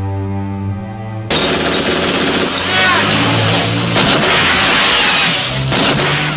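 Film soundtrack: sustained orchestral string music, broken off about a second in by a sudden, loud, rough action noise that runs on for several seconds with screeching glides in it.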